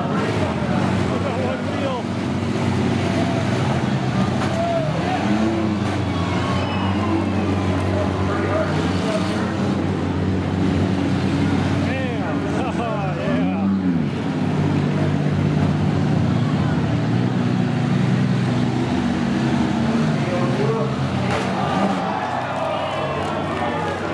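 Several demolition-derby minivan engines running hard together, revving up and down several times as the vans push and ram each other.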